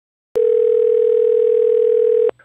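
A steady, single-pitched electronic tone like a telephone dial tone. It switches on with a click a moment in and then holds at one pitch with a slight waver.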